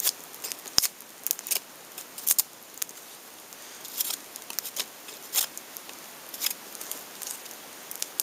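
A handmade bushcraft knife cutting and splitting a piece of wood: a string of irregular, crisp cuts and cracks of the blade biting into the wood.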